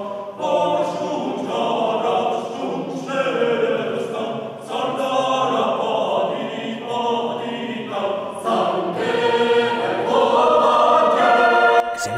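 Mixed choir of women's and men's voices singing a cappella in several parts, in sustained phrases with brief breaks between them, growing louder near the end.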